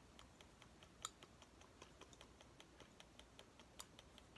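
Near silence: room tone with faint, regular ticks about five a second and one slightly louder click about a second in.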